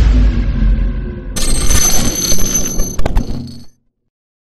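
Electronic intro sound effects: a deep boom dying away, then from about a second and a half in a bright ringing effect with a few sharp clicks, cut off suddenly near the end.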